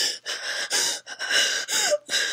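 Breathless laughter: a run of short, noisy gasps of breath, about four or five a second, with hardly any voice in them.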